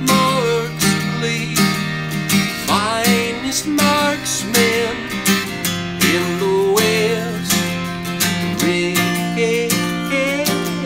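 Acoustic guitar strummed steadily, about two strums a second, with a man singing long, sliding notes over it.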